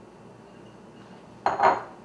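A glass mixing bowl set down on a tiled countertop: one short knock of glass on tile about one and a half seconds in.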